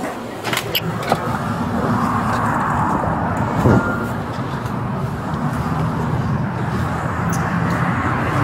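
A glass shop door clicks open, then steady outdoor road traffic noise follows, with a vehicle sound that drops in pitch about three and a half seconds in.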